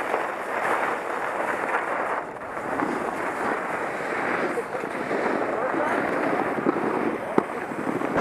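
Skiing down a packed-snow slope: a steady scraping hiss of edges on the snow, mixed with wind rushing over a helmet-mounted camera microphone, and a couple of sharp clicks near the end.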